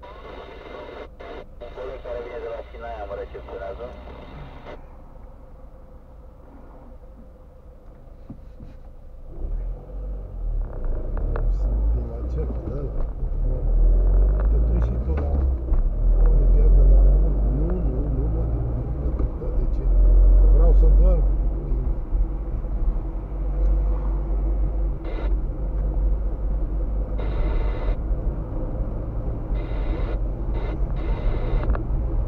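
Car driving heard from inside the cabin: a low road and engine rumble sets in about nine seconds in as the car moves off, grows louder and stays heavy, with a faint voice in the first few seconds.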